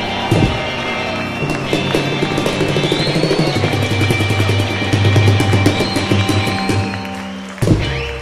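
Live rock and roll band ending a song: electric guitars hold chords over a fast drum roll and cymbals, closed by a final hit near the end.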